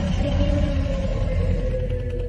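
Logo sting: a loud deep rumble under one long tone that slowly falls in pitch.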